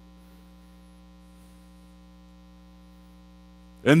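Steady electrical mains hum, a low buzz of several unchanging tones, in a pause between words. A man's voice comes back in just before the end.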